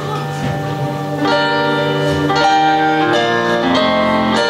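Digital piano playing slow, sustained chords with no voice over them, a new chord coming in about a second in and roughly once a second after that: an instrumental interlude between the soprano's sung phrases.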